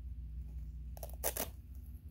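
Short metallic rattle of a costume's metal chain being handled, two quick jingles about a second in.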